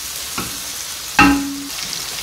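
Diced chicken, green pepper and peas sizzling in oil in a frying pan while a wooden spoon stirs them and scrapes the pan. A short, louder hum comes just past a second in.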